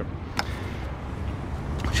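Steady low outdoor rumble with a single sharp click about half a second in.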